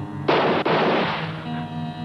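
A sudden loud crash, two quick impacts close together with a noisy decay lasting under a second, over a steady, droning dramatic music score.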